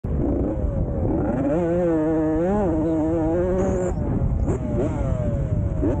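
Dirt bike engine running hard as the bike pulls away: it holds one steady note through the middle, then the revs climb and fall again and again in the second half as the rider accelerates and shifts up.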